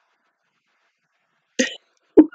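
A woman's short stifled laugh behind her hand, one sudden burst near the end.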